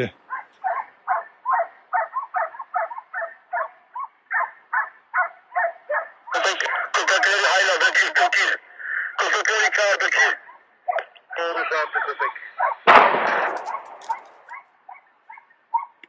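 Hunting dogs baying in a long string of barks, about three a second, then a single gunshot about 13 seconds in, the loudest sound, with a trailing echo.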